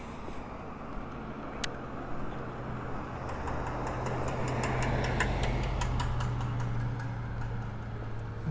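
A car passing on the street: its tyre and engine noise swells, is loudest about five to six seconds in, then eases off, over a steady low hum.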